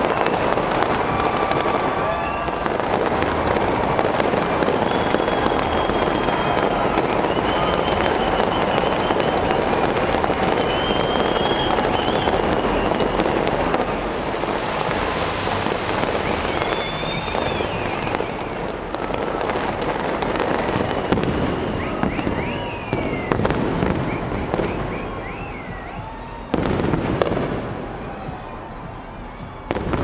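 Aerial fireworks display: dense continuous crackling and popping with bangs, and high wavering whistles over it. It thins out late on, then a sudden loud burst comes about 26 seconds in, and another at the very end.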